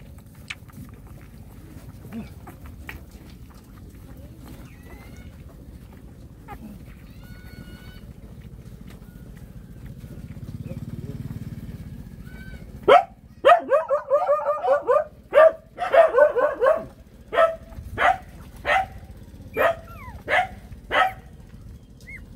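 A dog barking: a quick run of barks, then single barks about once a second.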